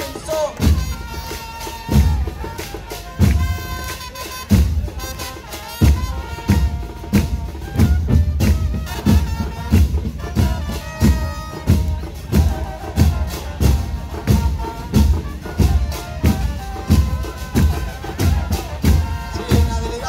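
Murga band playing live: large bass drums, bombos con platillo, pound out a steady beat of about one and a half hits a second under brass horns playing a melody.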